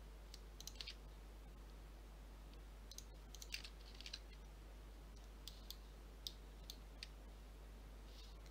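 Faint, scattered clicks of a computer mouse and keyboard over a quiet room: a few near the start, a cluster around three to four seconds in, and a few single clicks later.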